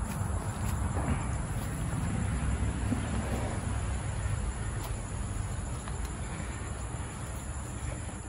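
Outdoor background with insects chirring in one steady high-pitched band over a low, even rumble.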